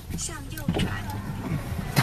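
Car engine and road rumble heard from inside the cabin, with faint voices over it.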